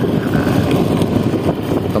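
A vehicle's engine running steadily while travelling along a road, with wind buffeting the microphone.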